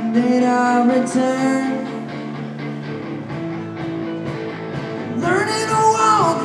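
A rock band playing live: electric guitars, electric bass and a drum kit, with a sung vocal line. The band plays quieter through the middle and swells louder again near the end.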